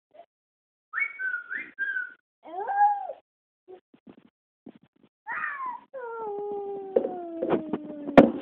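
A father's short whistled notes, answered by his toddler's high, wavering vocal attempts at copying the whistle. These end in one long call that slides down in pitch.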